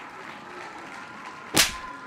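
A single sharp crack sound effect, like a whip crack, about one and a half seconds in, over a faint steady background.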